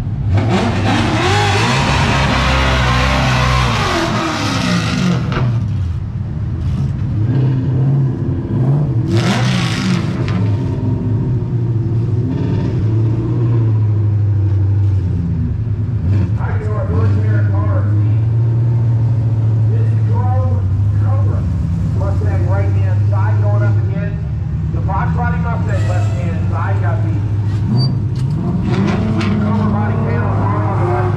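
Coyote Stock drag-racing Mustang with a Ford 5.0 Coyote V8 doing a burnout at the starting line: the engine is revved high over spinning tyres for about five seconds. There is another short burst of revving about nine seconds in, engines idle steadily in between, and they rev rising again near the end as cars stage.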